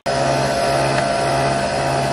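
Nespresso Vertuo coffee machine brewing a double espresso: a loud, steady motorised whir at a constant pitch as it spins the capsule and pumps coffee into the glass.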